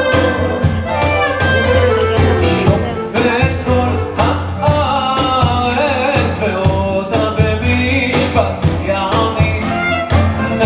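Live music from a small trio: a clarinet melody over digital keyboard and a steady cajón beat, with a man singing.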